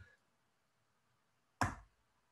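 Near silence, broken about one and a half seconds in by a single short, sharp click.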